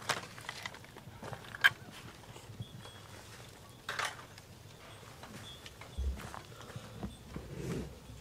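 Backyard hens clucking in short, scattered calls a few seconds apart, the excited cackling that goes with a hen laying an egg. A soft thump about six seconds in.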